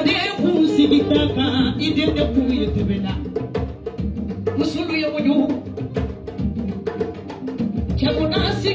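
A woman singing into a handheld microphone over live music with drums and percussion keeping a steady beat.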